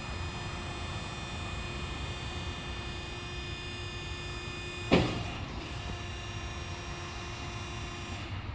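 Hydraulic bifold hangar door opening, its drive running with a steady hum. One sharp clunk comes about five seconds in.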